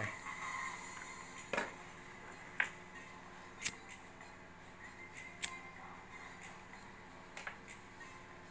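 A few sharp, separate clicks, five of them spaced one to two seconds apart, over a faint steady background of music-like tones.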